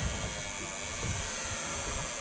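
Steady rushing hiss of wind and sea noise on an open boat, with an uneven low rumble underneath.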